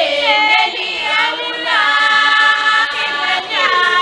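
A large chorus of girls and young women singing together unaccompanied in a traditional Swazi maidens' song. They hold long notes, some sliding downward in pitch between phrases.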